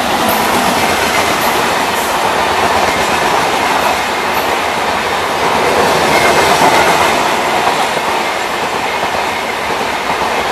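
Indian Railways express train passing at speed: the WAP-7 electric locomotive goes by at the start, then its passenger coaches run past, with a steady, loud rush of wheels on rail.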